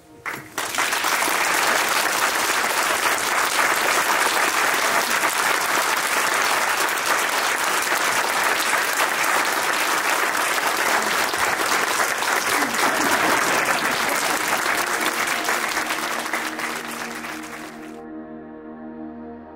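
Theatre audience applauding, the clapping starting suddenly about half a second in, holding steady and fading away near the end.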